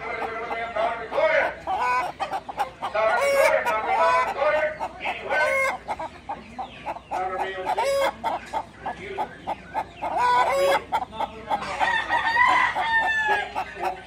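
Caged hens clucking and chattering in a continuous run of short calls, with a longer drawn-out call near the end.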